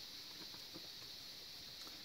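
Quiet room hiss with a few faint light ticks as dried seasoning is shaken from a small spice shaker over hunks of raw cabbage in a stainless steel pot.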